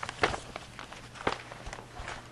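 Footsteps and small knocks on a hard floor, with two sharper knocks, one about a quarter second in and one just over a second in, over a steady low hum.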